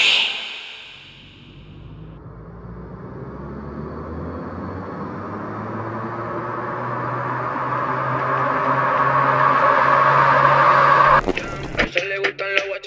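An electronic riser sound effect in a DJ mix outro: a rumbling swell over a steady low hum that grows steadily louder for about ten seconds, then cuts off abruptly near the end.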